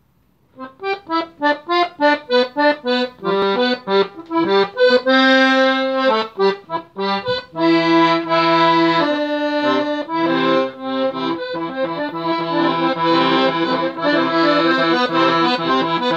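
Scandalli piano accordion played solo, starting about half a second in. It opens with short, separate notes, then moves to held chords with bass notes sounding under the melody.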